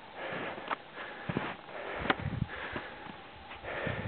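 A hiker's heavy breathing close to the microphone, in irregular puffs, with a few sharp crunching footsteps on snow and rock.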